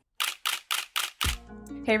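A quick run of about six sharp clicks, about six a second, then intro music with a deep bass comes in about a second in.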